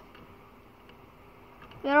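Faint, even background hiss, then a man's voice starts speaking just before the end.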